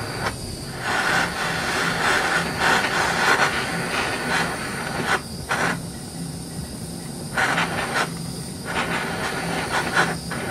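Handheld gas torch flame hissing steadily as it heats an aluminum plate for brazing with aluminum rod. The hiss thins out and swells back several times.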